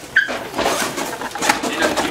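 Several people talking indistinctly in a small room, with a brief high-pitched vocal sound about a quarter second in and scattered clicks and rustles throughout.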